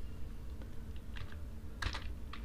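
Computer keyboard typing: a few scattered keystrokes, with a sharper one near the end, over a steady low hum.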